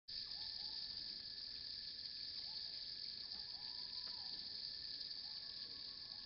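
Steady high-pitched insect chorus in tropical forest at dusk, with a second, lower steady whine beneath it and a few faint, short chirping calls now and then.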